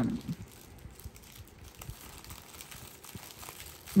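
Clear plastic packaging bag crinkling faintly as a hand handles it and slides it across a table, in small scattered rustles.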